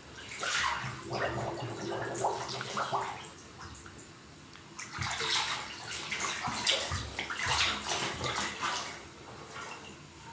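Water sloshing and splashing in a full bathtub as a person lying in it moves around, in two spells: the first from about half a second to three seconds in, the second from about five to nine seconds in, with quieter lapping between.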